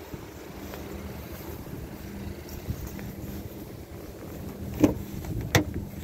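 Rear door of a 2020 Lincoln Nautilus SUV being opened: two sharp clicks of the handle and latch, under a second apart, near the end, over steady low background noise.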